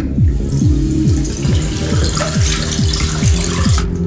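A bathroom sink tap running, water pouring into the basin, over electronic music with a steady pulsing bass beat. The water starts just after the beginning and cuts off suddenly near the end.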